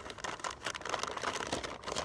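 Hands rummaging in a cardboard box, a dense run of small, irregular clicks and rustles as the items and packaging inside are moved about.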